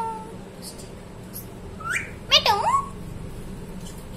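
A green parakeet gives short, squawking calls about two seconds in: one rising call, then two or three quick calls that sweep sharply up and down in pitch.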